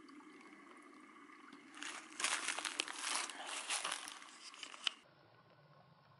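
Dry grass and brush crunching and crackling for about three seconds, starting about two seconds in and cutting off abruptly, over the faint trickle of a small stream.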